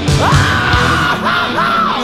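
Heavy metal song with a high yelled vocal over the band. The yell rises in and is held, then breaks into two shorter cries in the second half.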